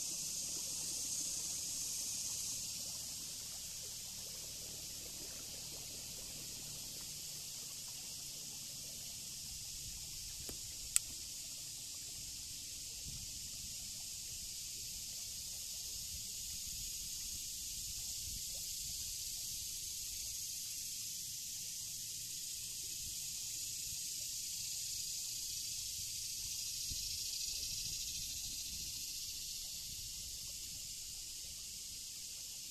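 A steady, high-pitched insect chorus that swells and fades slowly, with a single sharp click about eleven seconds in.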